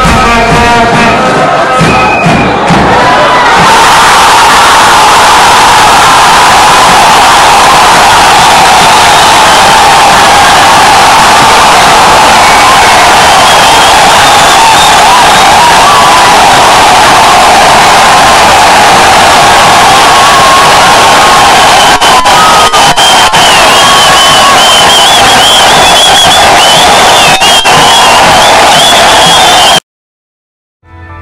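Stadium crowd cheering and shouting, very loud and constant, with shrill wavering cries above it. It takes over from music in the first few seconds and cuts off suddenly just before the end.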